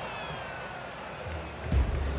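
Ballpark crowd noise, then stadium music with a heavy bass beat coming in about a second and a half in.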